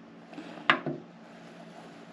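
A sharp click about two-thirds of a second in, with a softer second click just after, from the control knob on a YesWelder TIG 250P welder's panel being pressed and turned to step through its settings. A low steady hum runs underneath.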